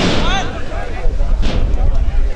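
A sharp thump right at the start, followed by shouting voices over a steady low rumble of wind on the microphone.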